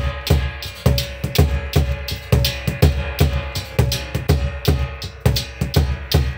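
A large skin-headed drum beaten with a stick together with large metal hand cymbals clashing, in a steady driving rhythm of about three to four strokes a second.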